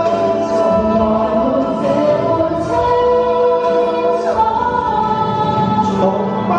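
A man and a woman singing a Chinese pop ballad duet with musical accompaniment, holding long notes.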